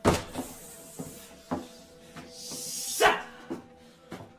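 Fight sound effects: a sharp hit at the start and a lighter one about a second and a half in, then a rising whoosh into the loudest, heaviest hit at about three seconds, over a faint, steady music drone.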